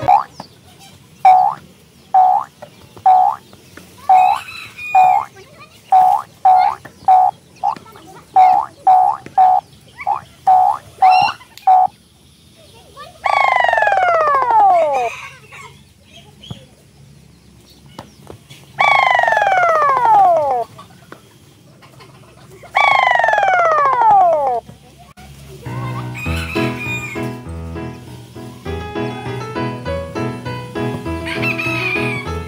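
Added cartoon sound effects. First comes a run of short pitched blips, roughly one and a half a second, for about twelve seconds. Then come three long falling whistle-like glides, each about two seconds long, and background music returns near the end.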